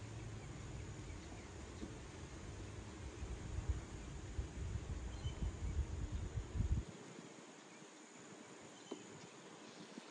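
Honeybee colony buzzing faintly inside a hive that is being treated with oxalic acid vapor. A low gusty rumble lies under it and stops about seven seconds in.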